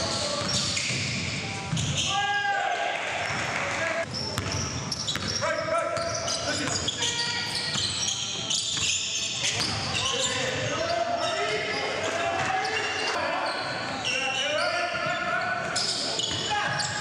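Live basketball game sound in a gym that echoes: the ball bouncing on the hardwood floor, sneakers squeaking, and players' indistinct calls.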